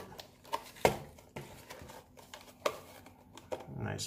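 Handling of clear plastic clamshell packaging as a cardboard box is lifted out of it: a handful of sharp plastic and card clicks and taps, irregularly spaced, over quiet room tone.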